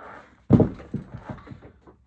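A dumbbell set down heavily on the floor: one loud thud about half a second in, followed by a few lighter knocks as it settles.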